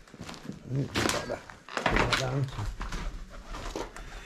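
Low, indistinct voices with scuffs and knocks of footsteps over a rubble-strewn floor, including a thunk about two seconds in.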